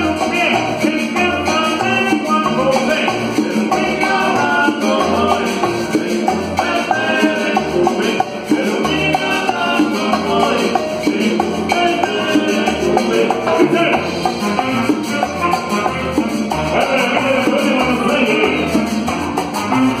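Live cumbia band playing: a steady, bouncing bass beat under keyboard, timbales and bongos, with a metal güiro scraped in rhythm.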